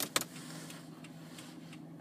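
Faint steady hum inside a car, with two short clicks at the very start.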